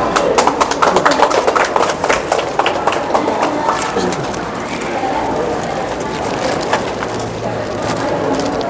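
Indistinct chatter of a small gathering of people, with a flurry of sharp taps or claps through the first half that thins out about four seconds in.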